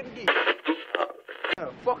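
A voice that sounds thin and tinny, as if heard through a telephone or radio, for about a second, then a man's voice at full range near the end.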